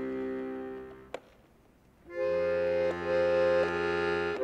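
Accordion playing slow, held chords. The first chord fades out about a second in, a single click sounds in the short pause, and new sustained chords come in a little after two seconds, changing twice.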